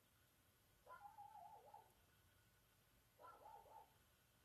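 Dogs barking faintly in the background: two short pitched calls, one about a second in and another about three seconds in.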